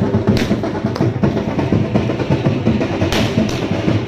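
Drums beating a fast, steady rhythm, with a few short bright hissing bursts above the drumming.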